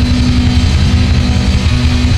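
Doom metal band playing loud, with heavily distorted electric guitars holding a low sustained note over bass and drums with crashing cymbals.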